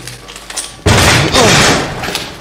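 A sudden loud bang about a second in, like a door slamming, followed by a noisy tail lasting about a second.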